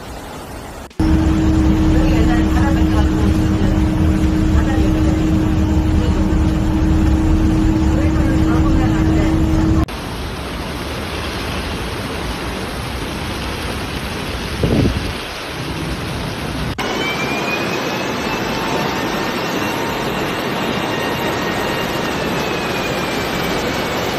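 Rushing floodwater heard as a steady noise across several abruptly cut clips. In the first clip a steady low hum runs over it, and a brief swell comes about fifteen seconds in.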